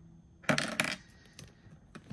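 A quick clinking rattle of small hard items knocking together about half a second in, as a hand handles the contents of a small handbag, followed by a couple of faint clicks.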